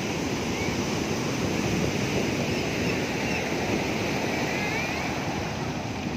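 Ocean surf from large waves breaking on the beach: a continuous, steady wash of noise. A few faint, short high calls come through around the middle and near the end.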